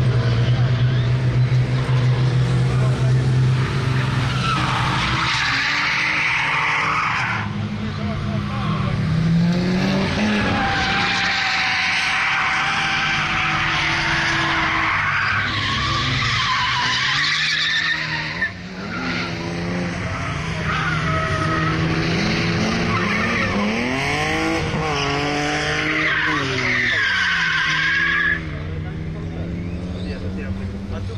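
Motor engines revving, their pitch rising and falling again and again, with people talking.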